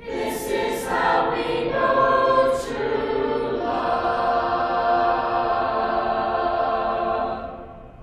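Teenage mixed-voice chorus singing a cappella in several parts, with a few sharp 's' sounds in the first three seconds. It moves into a long held chord that is cut off about seven and a half seconds in.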